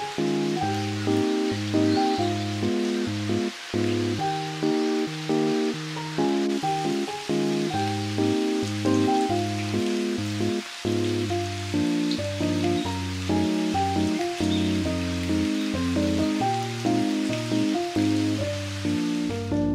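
Gentle instrumental background music, one note after another at an even pace, with the steady hiss of falling rain underneath.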